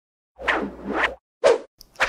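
Edited-in intro transition effects: a whoosh that swells twice over about a second, then a short pop about a second and a half in.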